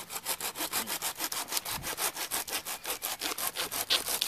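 Harbor Freight 8-inch folding pruning saw cutting through a tree branch: fast, even back-and-forth strokes of the toothed blade rasping through the wood, several strokes a second.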